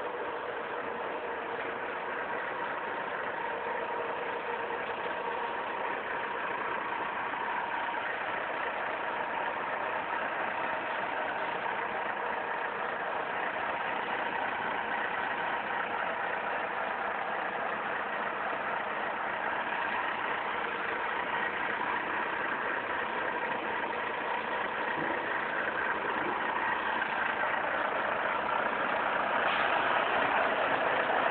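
Truck engine idling steadily, growing slightly louder toward the end.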